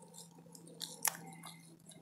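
Soft crinkling of a plastic bag filled with shaving-cream foam paint as it is handled, with one sharp tick about halfway through, over a faint steady hum.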